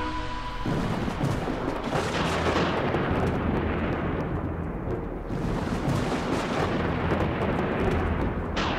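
A held musical tone cuts off under a second in. Cinematic sound effects follow: a dense, crackling rumble with blasts like explosions or thunder, surging about two seconds in.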